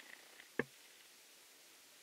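Quiet room tone with one short, sharp click about half a second in.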